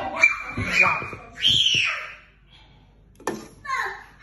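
A person's voice making high, drawn-out wordless sounds in the first two seconds. A short lull follows, then more voice near the end.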